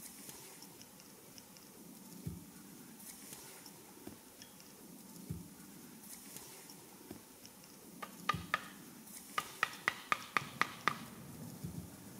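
Quiet background, then from about eight seconds in a run of sharp taps, roughly three a second for a few seconds: a felling wedge being tapped into the bore cut in the trunk.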